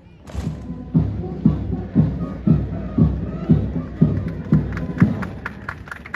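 A parade band's bass drum beating a steady marching time, about two beats a second. The beats stop about five seconds in, and lighter, quicker ticks continue near the end.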